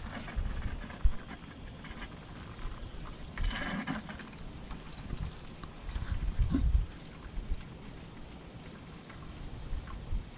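Hose water flushing through a clogged heater core and pouring out of a clear drain tube into a plastic bucket, a steady splashing patter. Low rumbles and a sharp thump about a second in, with the loudest rumbling about six to seven seconds in.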